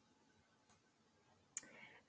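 Near silence, with one short click about a second and a half in.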